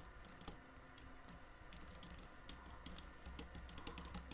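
Faint computer keyboard typing: a quick run of keystrokes that comes faster and denser in the second half.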